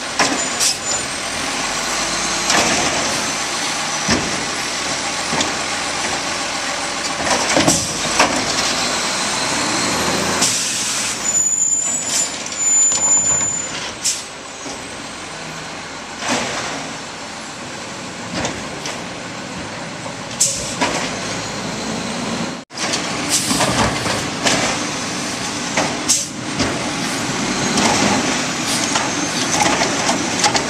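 Automated side-loader garbage truck collecting curbside carts: the diesel engine and hydraulic arm run steadily, broken by repeated sharp thumps and clatter as carts are lifted and dumped, and by hisses of the air brakes as the truck stops and starts.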